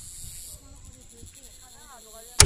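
Quiet outdoor ambience: a steady high-pitched hiss with faint distant voices.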